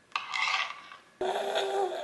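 A kitchen knife slicing a grape against a plastic cutting board: a short rasping scrape in the first half second.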